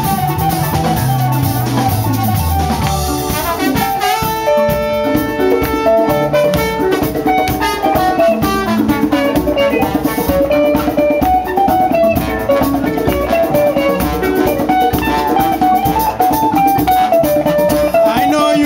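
Live dance band playing an instrumental passage on drum kit, bass and brass, with trumpet and trombone. A held melody line comes in about four seconds in.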